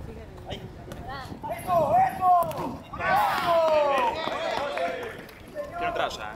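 Players shouting to each other across an outdoor football pitch. There is a shouted call about two seconds in and a longer, falling call from about three seconds in, with a few short thuds from the ball being kicked.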